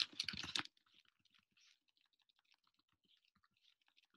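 Faint, irregular keystrokes on a computer keyboard as a short shell command is typed, following the tail of speech in the first moment.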